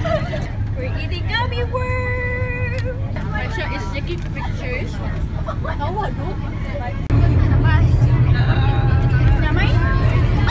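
Teenagers chattering inside a moving coach bus over the steady low rumble of the bus, with a brief held tone about two seconds in. The rumble and chatter get louder about seven seconds in.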